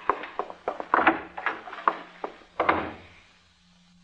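Radio-drama sound effects of objects being handled in a room: a series of sharp wooden knocks and clicks with two short sliding, rubbing sounds, dying away near the end.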